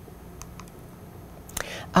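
Light computer key clicks: a few faint ones in the first second and a sharper cluster about one and a half seconds in, over a low steady hiss.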